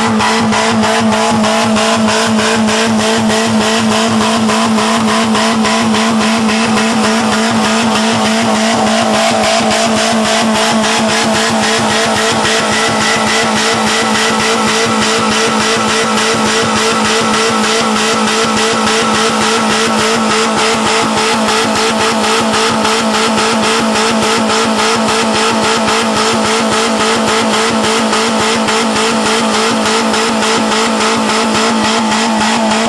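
Small Geo car engine held flat out at full revs, a loud, steady high whine that never drops, being deliberately over-revved to blow it up.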